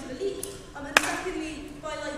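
A single sharp knock about a second in, loud and brief, over a woman's voice speaking in a large hall.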